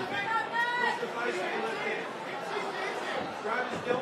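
Hall full of spectators talking and shouting, with one raised, high-pitched voice in the first second over the general chatter.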